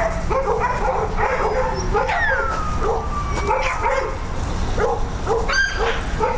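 Several dogs barking and yipping in quick succession, with one long falling whine about two seconds in.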